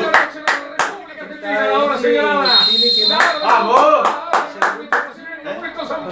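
A person clapping in a steady rhythm, about three claps a second, in a short run at the start and a longer one in the second half, among shouting voices. A short high whistle blast, the referee's whistle from the match broadcast, sounds just before the middle.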